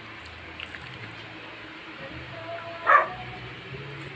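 A dog barks once, briefly, about three seconds in.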